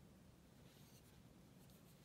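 Faint scratchy rustle of a fine ink brush stroking across postcard paper, two short strokes, about half a second in and near the end, over near-silent room tone.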